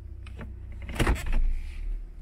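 Low steady hum of the car's engine idling, heard from inside the cabin, with a brief thump about a second in.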